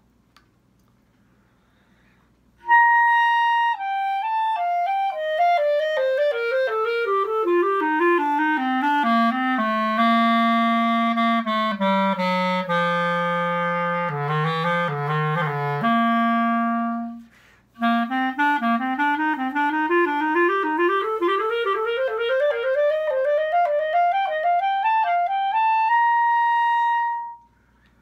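Buffet Festival Bb clarinet, fitted with red and orange Color-Rings, played solo: a long stepwise scale runs down to the bottom of its range, stops briefly, then climbs back up and ends on a held high note.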